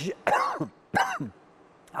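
A man clearing his throat twice, short rough sounds falling in pitch, the second about a second after the first.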